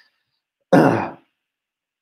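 A man gives one short throat-clearing cough about two-thirds of a second in.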